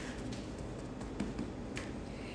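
A few faint, light taps of a cloth pouch of cornstarch being patted on a countertop to dust it, over quiet room tone.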